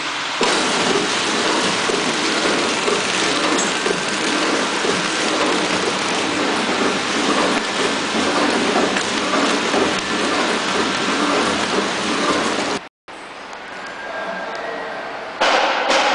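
Horizontal flow-wrapping machine running and sealing trays in plastic film: a loud, steady mechanical noise with fast, dense ticking. It cuts out briefly about 13 seconds in, returns quieter, and grows louder again near the end.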